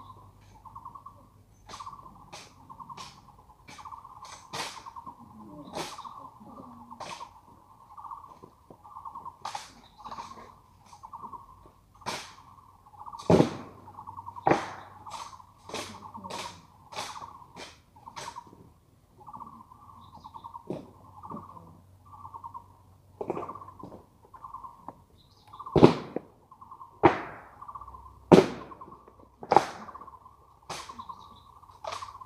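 Honor guard rifle drill: sharp slaps and clacks of gloved hands and rifle stocks striking as the ceremonial rifles are spun and snapped between positions, in irregular runs with the heaviest knocks near the middle and toward the end. Behind them a bird calls over and over in a steady pulsing series.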